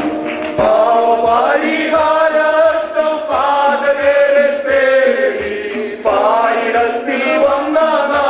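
A group of men singing a Malayalam Christian worship song together into microphones, in long held notes.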